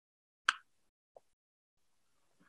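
A single short, sharp click about half a second in, then a much fainter tick about a second in, over otherwise dead silence.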